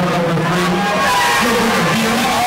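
Loud music over an arena PA, with a long held low note that wavers about a second and a half in.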